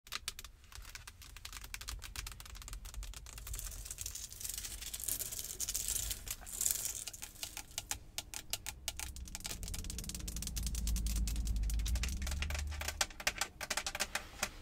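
Long acrylic nails tapping quickly on a Jeep's steering wheel and interior trim, with a stretch of scratching a few seconds in and a low rumble in the later part.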